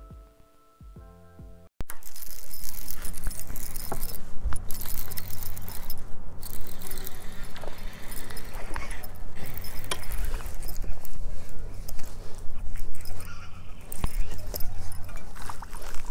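Music with mallet tones stops abruptly about two seconds in. It gives way to loud, steady rustling and handling noise close to the microphone, with scattered clicks and rattles, as a baitcasting reel is cranked to bring in a hooked fish.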